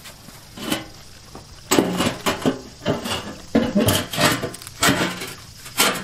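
Concrete cinder block scraping and knocking against the rim of a steel drum as it is worked back and forth to force it into the opening. A single knock comes first, then a dense run of scrapes and knocks from about two seconds in.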